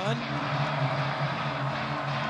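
Steady noise from a large stadium crowd during a live play, an even wash of many voices with no single voice standing out.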